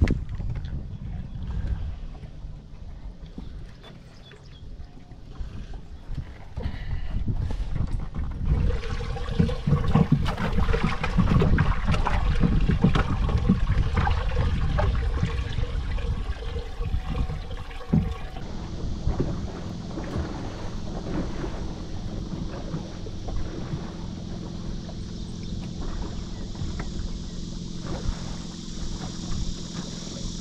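Wind rumbling on the microphone with small waves slapping and lapping against the boat hull, gusting harder through the middle of the stretch.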